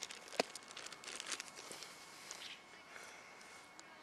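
Hands digging in loose, mulchy garden soil to pull out a dandelion by its tap root: faint crackles and rustles, with a sharp click about half a second in. Most of the crackling falls in the first second and a half, with only a low rustle after.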